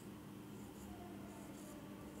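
Marker pen drawing on a whiteboard: a few short, faint squeaky strokes, over a low steady hum.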